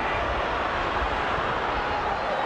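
Steady crowd noise from a football stadium's stands, an even wash of sound with no single event standing out.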